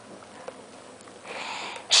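A child's breathy inhale close to the microphone near the end, after a sharp click at the start and a smaller one half a second later, over low room tone.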